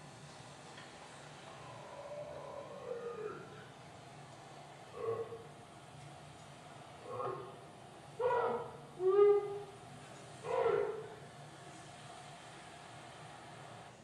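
Field recording of vocal calls played back over lecture-hall speakers: first a faint, wavering, gliding call, then five short, louder calls, two of them close together around eight to nine seconds in. The presenter presents it as a sasquatch saying his name, "Mike".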